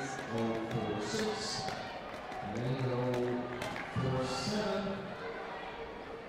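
Voices calling out across a large sports hall, some in long drawn-out shouts, with scattered sharp taps and knocks.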